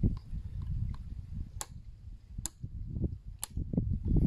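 Toggle switches with red flip-up safety covers being worked by hand: three sharp clicks about a second apart. A low wind rumble on the microphone runs underneath.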